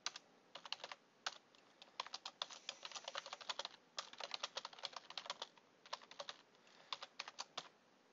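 Typing on a computer keyboard: runs of quick keystrokes in bursts, broken by brief pauses.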